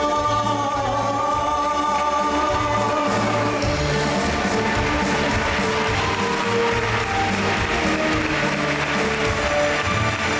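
Live band music: a male singer holds a long, wavering note for the first few seconds over bass, guitar and drums. The band then plays on with a fuller, brighter sound as the voice drops out.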